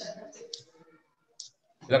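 A voice trails off at the start, followed by two short, sharp clicks about half a second and a second and a half in. A man then starts speaking near the end.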